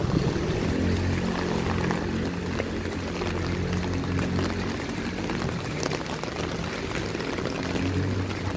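Steady hiss of rain on wet pavement and track ballast, with a low steady hum underneath.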